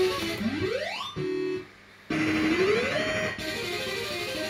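ACE Swop Shop fruit machine's electronic sound effects: a rising synthesized sweep and a short held tone, a brief pause, then another tone that climbs and holds. Its repeating tune breaks off for these effects and then picks up again.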